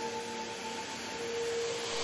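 Quiet meditation background music of sustained, steady held tones over a faint hiss. One higher tone fades out about halfway through, and a lower tone comes back in soon after.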